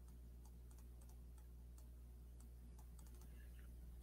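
Faint, irregular clicks of a computer keyboard and mouse as text is entered, over a low steady hum.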